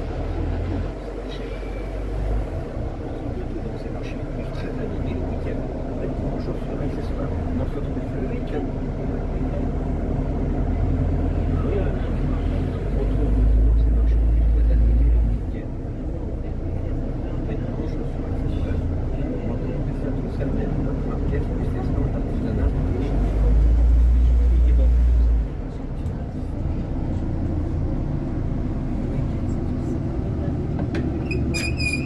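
Inside a moving London double-decker bus: the engine and road noise make a steady low rumble. It swells into two louder stretches of about two seconds each, near the middle and again about two-thirds in.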